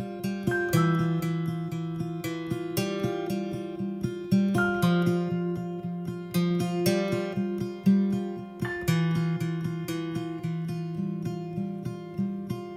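Music: an instrumental acoustic guitar passage with chords plucked and strummed, each note ringing out, and no singing.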